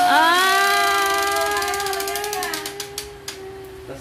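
Toy T-rex on a Hot Wheels Ultimate Garage track-set tower coming down to the base, its plastic mechanism ratcheting in rapid clicks that speed up near the end. A long, steady high-pitched wail is held over it for the whole stretch.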